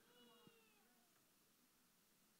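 Near silence in a pause of speech, with a very faint falling pitched sound in the first moments.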